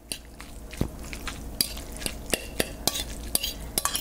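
A metal fork stirring tofu scramble on a plate, with irregular light clinks and scrapes against the plate and one sharper clink about a second in.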